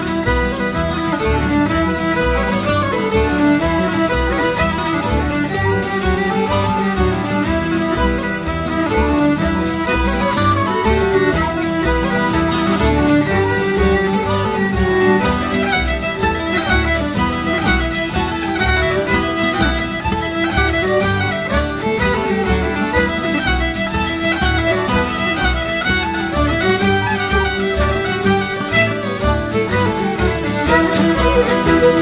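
Celtic instrumental band playing a lively Irish jig-and-reel set, led by fiddle over a steady beat.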